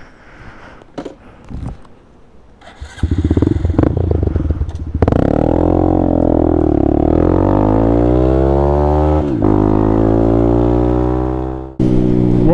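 Honda Grom (MSX125) air-cooled 125 cc single-cylinder four-stroke engine pulling away and accelerating, its note gliding up and down with road speed. The engine builds from a quiet start about three seconds in and is loud from about five seconds. There is a brief dip about nine seconds in.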